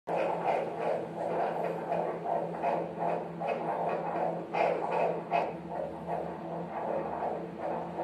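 Fetal heartbeat played through a fetal Doppler's speaker: a fast, regular pulsing of about two and a half beats a second, a normal fetal heart rate.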